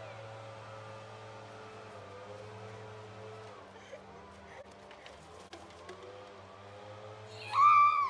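Quiet backyard background with a steady low hum and a few faint knocks about four to five seconds in as the pan of plastic cups reaches the stand. Near the end, a girl's loud high-pitched yell lasting about half a second.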